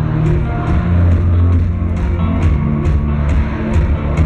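Rock band playing live in an arena: sustained bass notes and chords under drums, with regular cymbal strokes about three to four a second.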